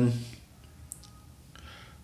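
A man's voice trails off at the start, then a quiet pause with one small, short click about a second in and a soft intake of breath near the end, just before he speaks again.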